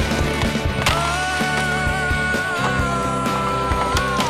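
Music with a long held note starting about a second in, over the sound of skateboard wheels rolling on hard ground.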